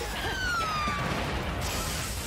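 Action-scene audio from the episode: a dense, noisy wash of sound effects with a falling, whistle-like tone in the first second.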